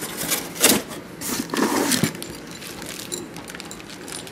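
Rustling and clatter of packaging and small kit parts being handled, in a few noisy bursts during the first two seconds, then only faint clicks.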